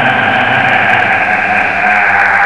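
Horror-style growl sound effect from a channel intro, here a loud, steady, harsh noisy roar.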